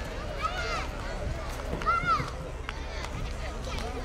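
Outdoor ambience of people in a tent camp: distant voices with several high, arching calls, the loudest about two seconds in, over a steady low rumble.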